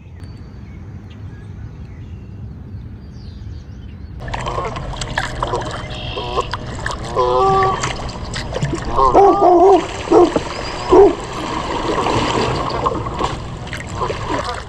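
Kayak being paddled, with water splashing and gurgling around the paddle and hull; this starts suddenly about four seconds in, after a low quiet rumble. A few short pitched calls stand out above the water noise in the second half.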